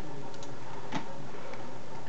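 A few soft computer-mouse clicks, the sharpest about a second in, over a steady background hiss.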